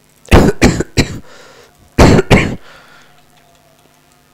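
A man coughing hard in two fits: three coughs in quick succession, then about a second later two more.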